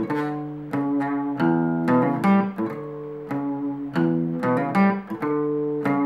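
Fender CD60E steel-string acoustic guitar playing a picked single-note riff: separate plucked notes ringing one after another in a repeating melodic pattern.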